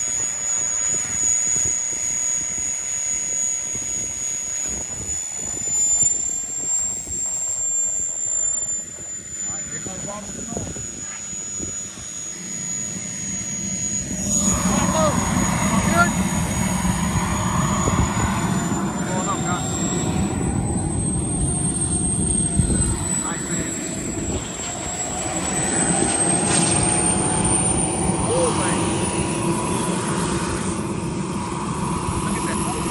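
Turbine-powered radio-controlled jet flying overhead: a high, steady turbine whine that slowly rises and falls in pitch as the jet passes. From about halfway through, the sound grows louder and fuller, with people's voices mixed in.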